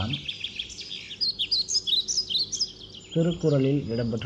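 Small birds chirping and twittering in the background, with a quick run of short high chirps in the middle. A man's voice starts speaking near the end.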